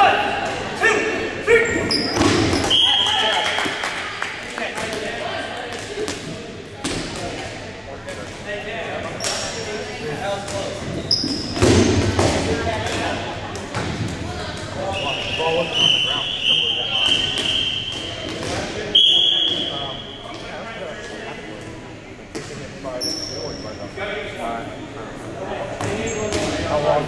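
Dodgeballs thrown, bouncing and smacking on a hardwood gym floor in an echoing hall, many scattered thuds, under players' voices and shouts. Several short high squeaks come through, the longest stretch about two-thirds of the way in.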